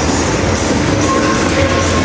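Loud, steady shop din with a low hum and faint background music.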